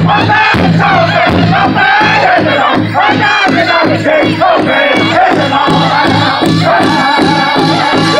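A powwow drum group singing in high, strained voices over a steady beat on a large shared powwow drum, several drummers striking it together.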